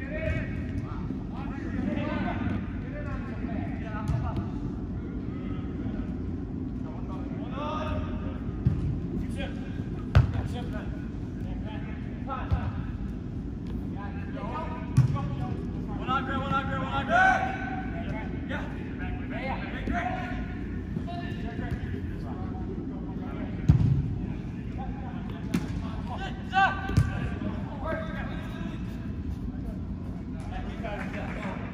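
Indoor soccer game: players shouting calls to each other while the ball is kicked now and then, with about half a dozen sharp thuds of foot on ball, over the steady hum of a large indoor hall.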